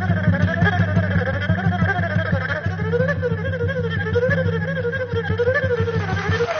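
An erhu plays a slow, gliding melody over a strummed acoustic guitar.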